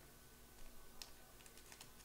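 Near silence, with a cluster of faint, light clicks in the second half.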